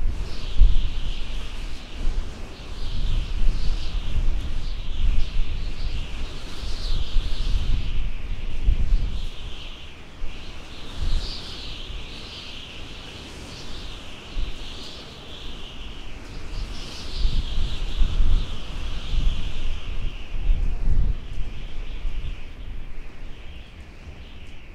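A chorus of birds chirping over one another, with wind rumbling on the microphone, swelling and easing.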